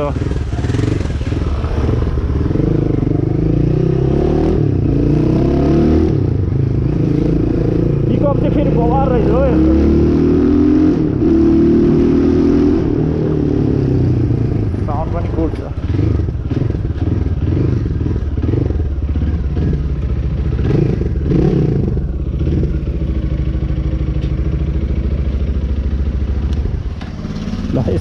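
Hanway Scrambler 250's single-cylinder, air-cooled four-stroke engine running under way, its pitch rising and falling with the throttle, and dipping near the end.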